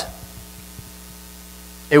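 Steady electrical mains hum with a faint hiss under it, in a pause between spoken words; a voice starts again at the very end.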